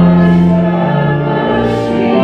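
Pipe or electronic church organ playing slow, held chords while a congregation sings along; the notes change about once a second.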